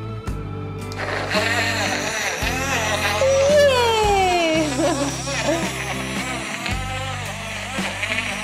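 Background music with a steady bass line, over which a small battery-powered portable blender runs from about a second in, whirring as it blends mango, milk and ice cream into a milkshake.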